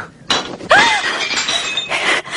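A ceramic dinner plate dropped onto a hard floor, striking about a third of a second in and shattering, its pieces ringing and clattering for over a second.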